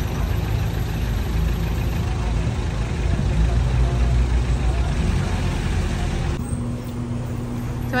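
Motor vehicle engine idling, a steady low rumble, with faint voices in the street. About six and a half seconds in, the sound changes abruptly to a quieter background with a steady low hum.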